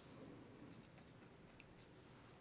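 Faint glue stick rubbing on layered cardstock: a quick run of short, light scratchy strokes through the second half.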